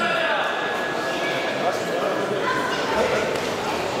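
Spectators shouting and cheering in a large, echoing sports hall as the kickboxing round gets under way.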